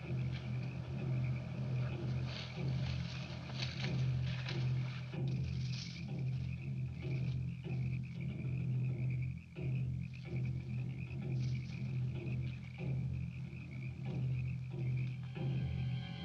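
Jungle night ambience on an old film soundtrack: a continuous chorus of frogs and insects calling, with a flickering high shimmer over a low steady drone.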